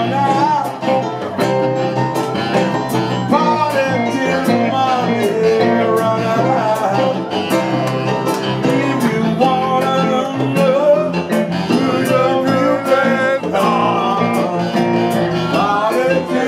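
Live band playing a country-blues tune: electric guitar leading with bending notes over electric keyboard, bass guitar and congas, with a steady cymbal beat.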